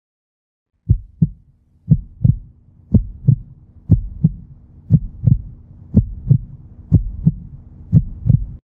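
Heartbeat sound effect: double 'lub-dub' thumps about once a second, starting about a second in, over a faint steady low hum.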